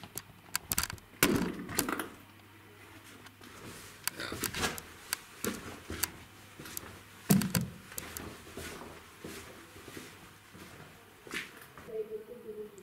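Scattered clicks and knocks of a handheld camera being moved about and set down, with two louder thuds, one about a second in and one about seven seconds in.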